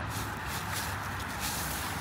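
A steady low hum of outdoor background noise with faint rustling over it.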